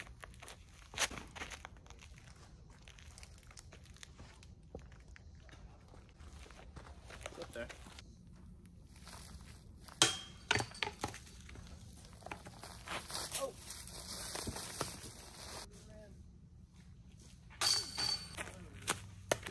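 Footsteps and scuffing on a dry dirt trail with leaf litter during a disc golf run-up and throw. A single sharp crack about ten seconds in, the loudest sound, comes at the moment of a throw.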